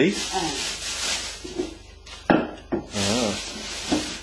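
A rubbing, scraping noise with voices over it, and two sharp knocks a little over two seconds in.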